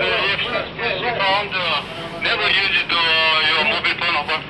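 Speech: people talking, with no other distinct sound, over a steady low background noise.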